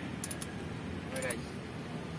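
Steady background hum with a few light clicks and one brief sound of a voice about a second in.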